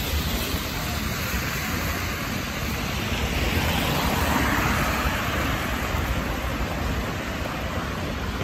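Car tyres hissing on a wet street as cars pass close by, the hiss swelling about four seconds in, over a steady low rumble of city traffic.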